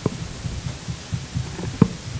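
Handling noise from a gooseneck podium microphone being adjusted by hand: irregular low thumps and rubbing, with a sharper knock at the start and another near the end.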